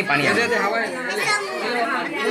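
Several voices talking at once: overlapping chatter.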